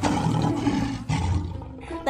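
A lion-roar sound effect: two long, low roars, the second trailing off near the end.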